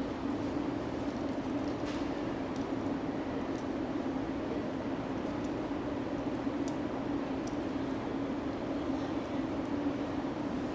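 Steady low background hum, with a few faint small clicks scattered through as a large cooked shrimp is peeled by hand.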